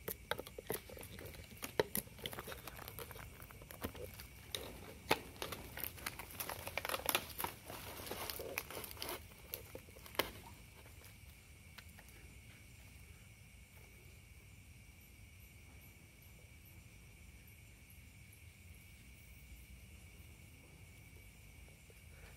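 Rustling and crinkling with many scattered clicks: hands handling a plastic outdoor wireless unit and tying it with cord to a bamboo pole among leaves. After about ten seconds the handling stops, leaving only a faint steady high hum.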